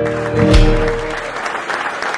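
A Cargill custom acoustic guitar's final chord, struck again about half a second in and ringing out until it fades, as audience applause rises and takes over by the end.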